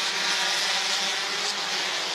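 USF 2000 open-wheel race cars running past on the straight, their engines making a steady drone with no sharp revving.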